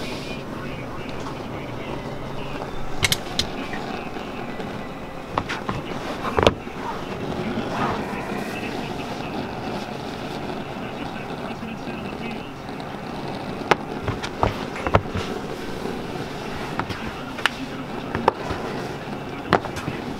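Steady room noise with murmured voices in the background and scattered sharp knocks and clicks, the loudest about six and a half seconds in, with a cluster around fifteen seconds.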